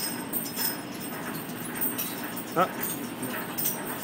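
Two kittens play-fighting in loose straw: steady rustling and scuffling of the straw, with a short vocal sound about two and a half seconds in.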